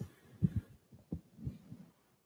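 About five low, muffled thumps spread irregularly over a second and a half.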